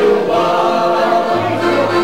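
A group of men singing together without instruments, holding long notes.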